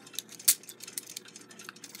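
Light metallic clicks and taps of small clock parts handled between the fingers: the steel alarm mainspring box of a Westclox Big Ben Style 5A alarm clock being fitted to its brass wheel. One sharper click comes about half a second in.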